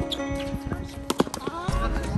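A song plays under a doubles tennis rally, with several sharp pops of racket strikes on the ball, the loudest about a second in. A person's voice calls out near the end.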